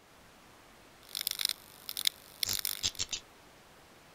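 End-card sound effects: a steady hiss of static with three clusters of short crackly electronic bursts, about a second in, at two seconds, and from about two and a half to three seconds, before the hiss is left on its own.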